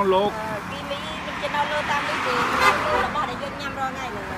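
Quiet talking, with a plastic bag rustling for about a second around the middle.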